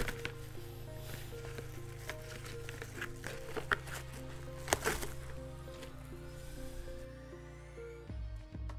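Quiet background music of held notes that step between a few pitches, with a few faint clicks and crinkles of hands handling a plastic cover over gathered fabric.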